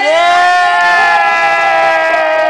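One person's voice holding a single long cheer, like a drawn-out "yaaay", steady and falling slightly in pitch.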